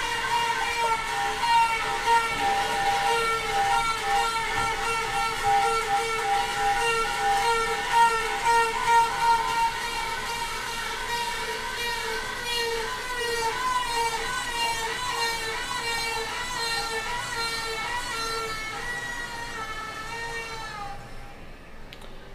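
Toilet tank refilling after a flush, its fill valve singing: a loud, wavering whine with several overtones that the speaker calls annoying. The whine fades out near the end as the tank fills.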